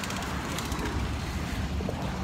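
City street background noise: a steady low rumble of traffic.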